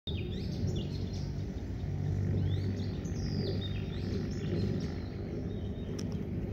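Birds chirping, with many short sweeping calls, over a steady low rumble.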